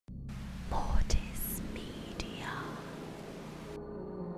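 Animated logo intro sting: a hiss of glitchy static with a distorted, whispering voice and two sharp glitch clicks about a second apart. The static cuts off suddenly near the end, leaving low steady tones.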